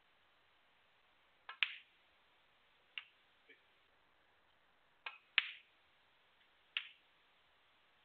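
Sharp clicks of snooker balls: the cue striking the cue ball and ball knocking against ball, about seven clicks in all. They come in close pairs about a second and a half in and again about five seconds in, with a last click near the end.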